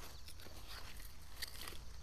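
Faint rustling with a few soft crackles and ticks as zucchini leaves and their hollow stems are handled and cut with a utility knife.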